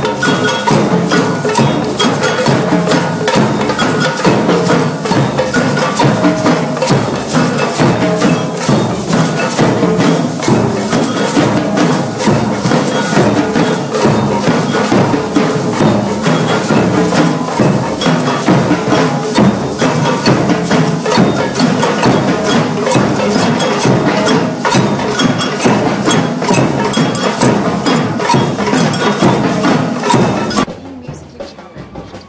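Group samba percussion: large bass drums struck with mallets and metal shakers playing a steady, dense rhythm together.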